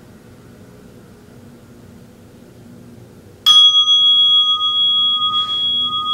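A meditation bell struck once about three and a half seconds in, ringing on with two clear steady tones that slowly fade, marking the end of the sitting period. Before the strike there is only a faint steady room hum.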